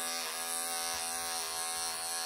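Electric pet clippers buzzing steadily as they are run close to the skin through a matted, pelted cat coat, the pitch dipping slightly about a third of a second in.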